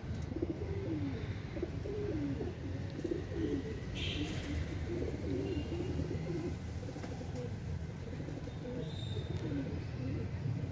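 Caged domestic pigeons cooing, one low rolling call after another, over a steady low rumble.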